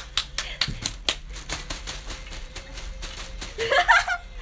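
Close handling noise: a run of quick, irregular clicks and rustles right at the microphone, with a little laughter.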